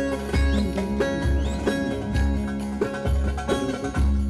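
Saz (bağlama) playing an instrumental Turkish folk dance tune in quick plucked notes over a deep beat that comes about once a second.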